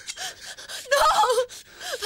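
A frightened woman gasping for breath, with a high, wavering cry of "no" in the middle.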